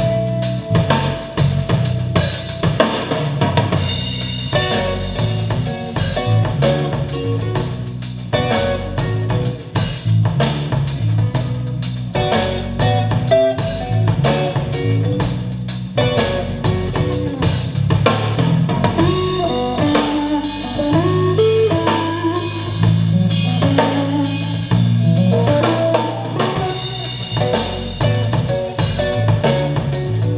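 Jazz track with drum kit, guitar and bass, played back through a pair of Focal Chora 806 two-way bookshelf speakers.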